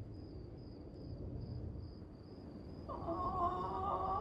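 Quiet, low droning ambience of a horror-film soundtrack, with a faint high tone pulsing about three times a second. About three seconds in, several wavering mid-pitched tones come in and grow louder.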